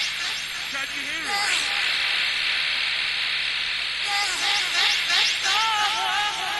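Live rave tape recording of a jungle DJ set: a wavering, voice-like sound over thin music with little bass. About a second and a half in it gives way to two to three seconds of steady hiss-like noise, and the wavering sound returns near the end.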